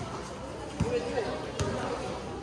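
Basketball being dribbled on a court, bouncing twice with under a second between bounces, over background voices.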